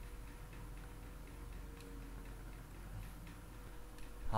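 Computer mouse clicking, a handful of faint, irregular ticks over a low steady hum.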